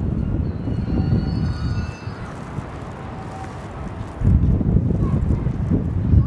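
Wind buffeting the camera microphone in two gusty spells, a low, uneven rumble that drops away for a couple of seconds in the middle.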